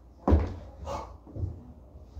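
A single sharp thud, then a dog barking briefly a couple of times.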